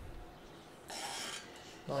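A brief rasping rub about a second in, lasting about half a second.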